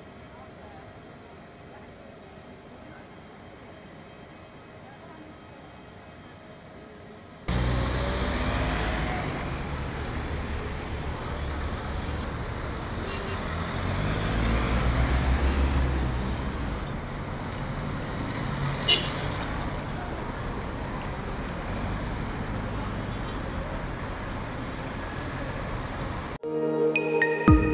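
Faint outdoor ambience for about seven seconds, then a sudden cut to loud, steady city road traffic with cars passing. A brief sharp sound stands out a little over two-thirds of the way through.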